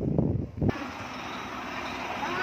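Wind buffeting the microphone in uneven low gusts, which stop abruptly less than a second in. A steady, quieter hiss of open-air noise follows.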